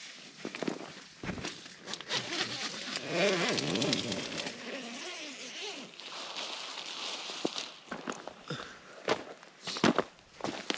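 Irregular rustling and clicking noises, ending in footsteps crunching through dry grass close by.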